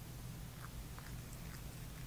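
A cat mouthing and chewing a catnip toy: a few faint, soft clicks over a low steady hum.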